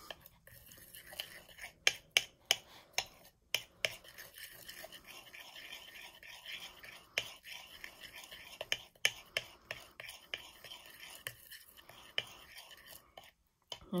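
Metal table knife stirring and smearing frosting on a ceramic plate: a soft, continuous scraping with irregular light clicks as the blade taps and drags on the plate.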